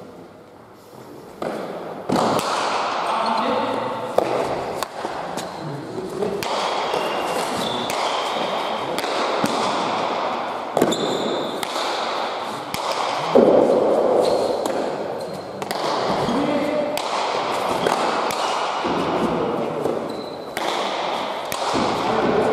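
A rally of Basque pelota: the hard ball strikes the walls and floor of the indoor court again and again with sharp knocks that ring out in the hall, amid players' calls.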